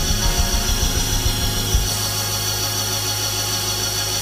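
Live church band music under the sermon: held keyboard chords over a steady low bass note, with low drum beats during the first two seconds.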